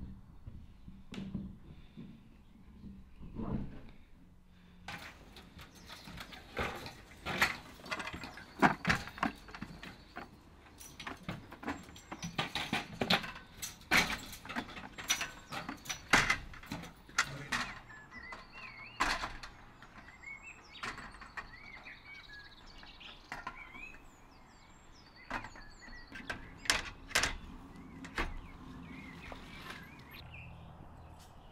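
Aluminium ladder sections knocking and clanking as the roof ladder is handled and pushed up onto the conservatory roof: a long run of irregular sharp metal knocks and clatter, thinning out in the middle and picking up again near the end. Birds chirp faintly in the background.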